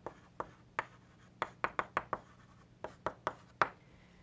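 Chalk writing on a blackboard: a string of short, sharp, irregular taps and scrapes as the letters are written.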